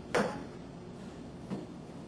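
A woman counting "five" aloud as a dance count. About one and a half seconds in there is one soft thud.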